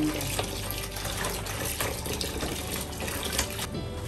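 Kitchen tap running into a plastic basin of soaked beans, with splashing as a hand stirs them to wash off the skins. The running water eases off shortly before the end.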